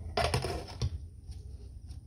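Metal liner bucket of a wax warmer being set down into the heater's well, knocking and clinking against it: a few sharp knocks near the start and a little under a second in, then lighter ticks as it settles.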